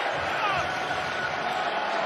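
Steady noise of a large stadium crowd during a pause before the snap, with faint voices rising out of it about half a second in.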